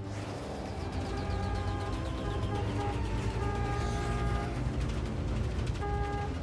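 Low, steady rumble of an ambulance on the move, heard from inside its rear compartment, under a film score of long held notes.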